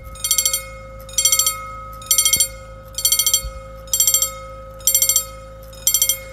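EFACEC mechanical level-crossing bell ringing in short bursts of rapid strikes, about one burst a second: the warning that the crossing is active and a train is due.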